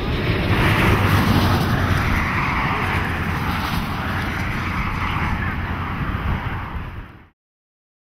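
Tyres hissing on wet pavement as vehicles drive past, swelling twice, over a low rumble of wind buffeting the microphone. The sound cuts off abruptly about seven seconds in.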